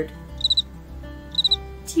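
Electronic cricket chirp from the built-in sound chip of Eric Carle's The Very Quiet Cricket board book: two bursts of three quick high chirps, about a second apart.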